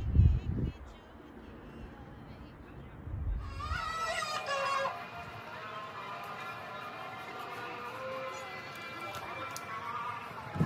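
Two low rumbles on the microphone, one right at the start and one about three seconds in. Then, about three and a half seconds in, a sung melody comes in and carries on.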